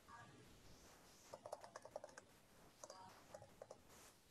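Faint typing on a computer keyboard, two short runs of keystrokes, the first about a second in and the second near the end, over near silence.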